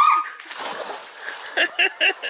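A person jumping into a swimming pool: a short rising yelp at the start, then the splash of water about half a second in, lasting about a second.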